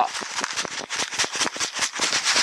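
Dry sand and gravel rattling and clicking in a plastic gold pan as it is shaken and knocked during dry-panning: a fast, uneven run of ticks and rattles.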